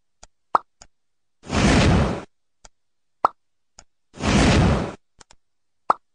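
Cartoon sound effects: light clicks around a sharp plop, then about a second of loud noise. The pattern plays twice, and the clicks and plop begin a third time near the end.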